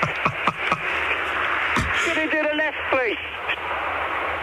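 A few quick laughs in the first second, then the hiss of a mobile phone line with background noise and a few faint words.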